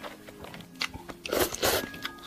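Instant noodles being slurped and chewed, with two short, louder slurps in the second half.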